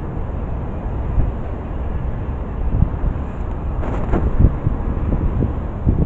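Wind buffeting a body-worn camera's microphone: a steady low rumble, with a few brief rustles around the middle.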